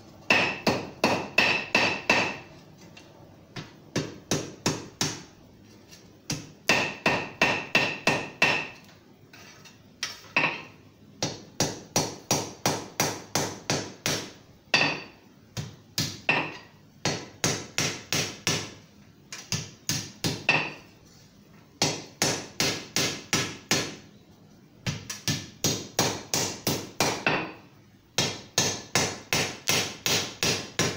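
Hand hammer striking a thin sheet-steel hoop on an anvil at welding heat, forge-welding a split scarf. The blows come in quick runs of about five a second, broken by short pauses, and some runs ring brightly off the anvil.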